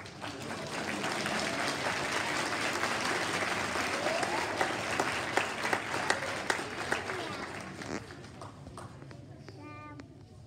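An audience clapping, a dense patter of many hands with a few voices calling out, dying away about eight seconds in.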